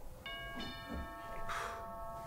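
Doorbell chime ringing two notes, the second following about a third of a second after the first, each holding for over a second before fading out near the end. A short breathy hiss sounds under it near the end.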